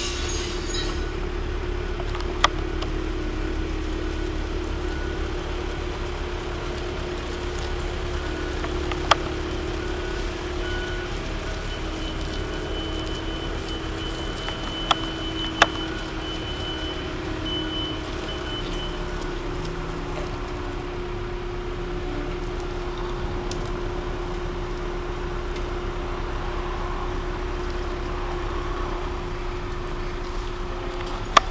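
Telehandler engine running steadily as the machine drives and works its boom, with four short sharp knocks spread through.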